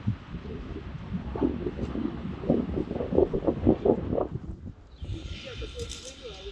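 Indistinct voices talking, over a steady low rumble.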